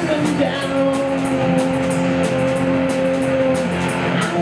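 Live rock band playing: a distorted electric guitar holds one long note for about three seconds over bass and drums, with steady cymbal hits.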